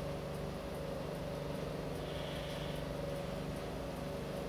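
A steady mechanical hum with a hiss, holding two fixed low tones without change.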